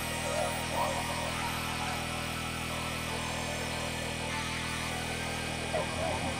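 Experimental synthesizer drone: many steady held tones stacked from the bass upward, under a buzzing, warbling layer in the middle range.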